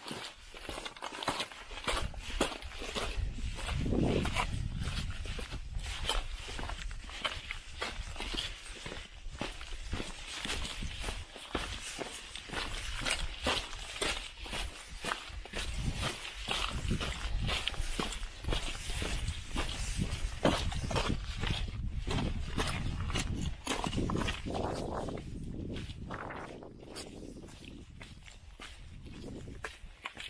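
Hiking footsteps on a rocky granite trail, an irregular run of steps over a low rumble on the microphone, growing quieter near the end.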